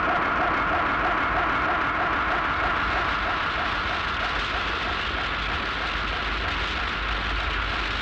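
Tokusatsu spinning sound effect for Ultraman Jack whirling around: a steady whirring rush with a faint pulse repeating a few times a second, easing off slightly in the second half.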